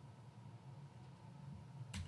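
Very quiet pause with only a faint steady electrical hum, broken by one brief sharp click just before the end.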